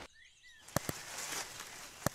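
Cartoon forest ambience with faint bird chirps, then leaves rustling in a bush, starting with a couple of sharp clicks a little before one second in.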